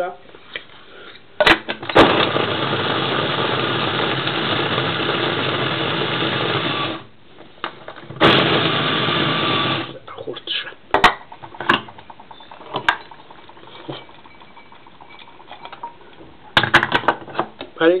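Krups electric food chopper running steadily for about five seconds as it chops carrot chunks, stopping, then running again for about two seconds. After that come scattered clicks and knocks as the chopper bowl is handled.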